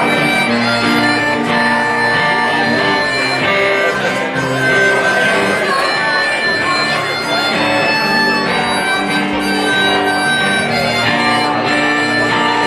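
Harmonica played from a neck rack over strummed acoustic guitar, an instrumental break in a folk song, with long held harmonica notes.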